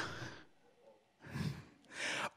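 A man breathing into a close handheld microphone in a pause between phrases: the end of a word fades out, then a short breath about one and a half seconds in, and an inhale near the end.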